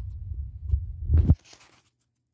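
Low rumbling handling noise with a few soft thumps from a hand-held phone being moved over papers, the loudest thump just over a second in, after which the rumble cuts off suddenly. A short papery rustle follows.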